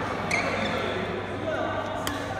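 Background chatter of several voices in a badminton hall, with a short sharp click about a third of a second in and another at the end.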